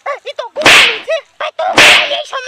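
Two loud, sharp cracks about a second apart, each dying away over a fraction of a second, between bits of high-pitched chattering voices.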